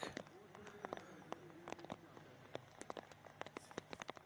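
Faint, irregular ticking of raindrops striking a surface near the microphone, over faint distant voices.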